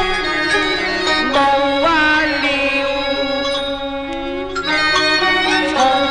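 Cantonese opera music from a 1950s recording: a melodic line of held notes that slide between pitches over steady accompaniment.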